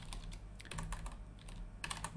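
Faint computer keyboard keystrokes: a few scattered key clicks, coming closer together near the end.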